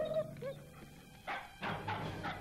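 Dog vocalising: a short rising whine at the start, then two barks about a second and a half in.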